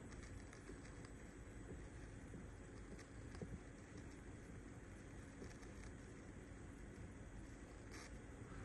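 Near silence: low room tone with a few faint ticks.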